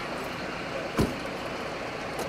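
A single sharp thump about a second in, over steady background noise.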